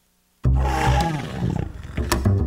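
Animation soundtrack: silence, then about half a second in a sudden loud roaring sound effect over music, which dies down after about a second.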